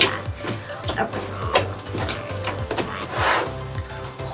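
Cloud slime squishing and squelching as it is kneaded and pulled up by hand in a plastic tub, a series of short wet noises with the loudest about three seconds in, over background music with a steady beat.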